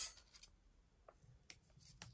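Faint handling sounds of thin metal cutting dies: a few light clicks and soft rubbing, with one sharper click about one and a half seconds in.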